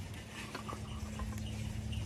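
Faint small clicks and crackles of fingers breaking up a dried cannabis bud over a plastic rolling tray, over a low steady hum.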